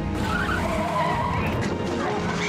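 Vehicle tyres squealing in a skid, a wavering high screech that starts just after the beginning, over background music.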